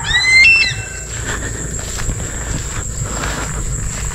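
A bird calls once from high in a coconut palm: a short, high-pitched cry that rises, jumps in pitch and falls away within the first second. A steady outdoor background follows.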